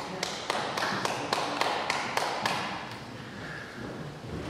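A few people clapping in a hall, about three or four claps a second, dying away about two and a half seconds in.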